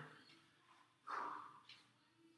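Near silence: room tone, broken about a second in by one short, faint sound lasting about half a second.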